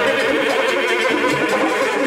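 Live Haitian Vodou ceremonial song: a woman's voice singing through a microphone over a steady rhythm of rattles and hand percussion, with a deep drum stroke about every second and a half.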